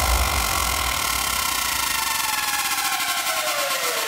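Hardstyle breakdown in a DJ mix. The pounding bass fades out about halfway through while a synth sweep falls steadily in pitch over a rapid run of high ticks, building toward the next drop.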